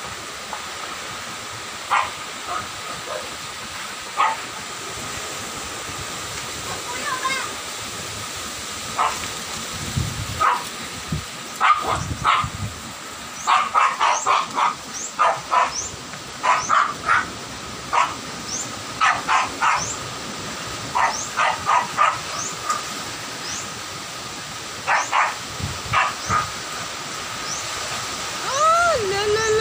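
Strong storm wind and rain making a steady rushing noise, with a few gusts thumping on the microphone near the middle. A dog barks in repeated short bursts through the second half.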